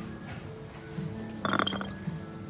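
A glass jar with a metal lid clinking as it is set back down among other glass jars on a shelf: one short, ringing clink about one and a half seconds in.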